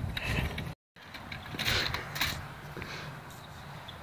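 Wire shopping cart rattling and creaking as it is handled and rolled over wooden boardwalk planks, with sharp clatters near the middle. The audio drops out for a moment about a second in.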